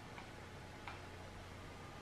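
Two faint, short clicks of tarot cards being handled and set down on a cloth-covered table, over a low steady room hum.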